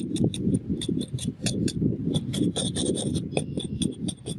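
Barnacles and grime being scraped and rubbed off a horseshoe crab's hard shell: a continuous rasping scrape dotted with many sharp clicks, thickest about two and a half to three and a half seconds in.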